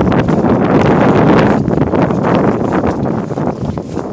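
Wind buffeting the microphone, loud and uneven, easing slightly near the end.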